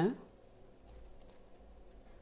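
Three faint computer mouse clicks about a second in, the last two close together, as a shape is selected and resized on screen.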